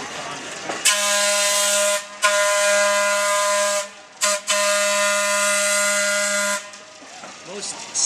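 Air whistle on an electric railway crane work car sounding four steady blasts: long, long, short, long, the grade-crossing signal.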